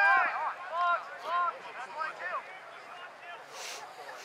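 Several voices shouting and calling out at once, loudest in the first half second, then scattered shorter calls.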